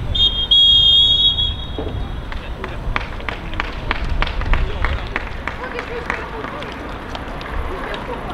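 Referee's pea whistle blowing one long blast of about a second and a half, the half-time whistle, followed by a few seconds of scattered clapping from a small crowd of spectators.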